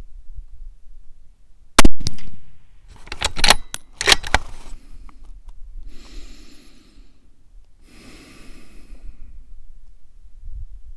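A bolt-action rifle fires once about two seconds in. A quick run of metallic clicks follows as the bolt is worked to eject the case and chamber the next round. Then come two slow breaths, in and out, as the shooter settles his natural point of aim with his breathing before the next shot.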